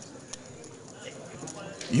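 Poker chips clicking a few times as they are handled at the table, over low room noise.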